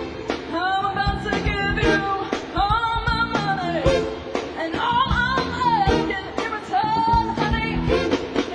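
Live band playing upbeat rock-and-roll: a sung vocal line with long held notes over a drum beat, electric guitar and bass.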